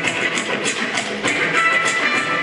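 Music with guitar and a steady beat.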